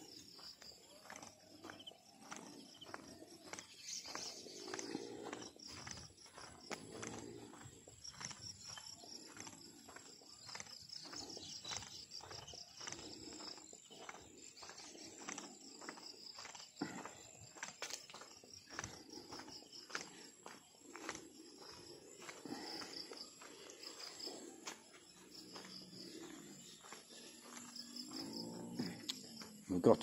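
Footsteps on a concrete path at a walking pace, with insects chirring steadily and high in the background. A few faint animal calls come through now and then, the clearest about a second before the end.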